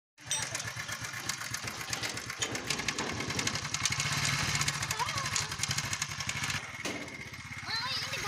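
A motorcycle engine running steadily with an even low pulse, breaking off briefly about seven seconds in.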